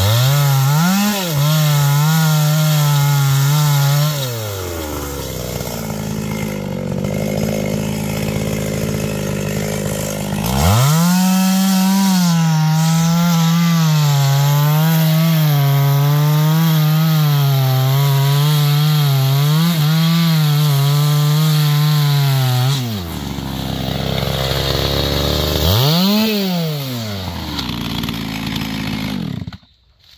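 GZ4350 two-stroke chainsaw cutting into a tree trunk, its engine running under load in the cut. It drops back off the throttle twice, runs up in a brief rev near the end, and then stops abruptly.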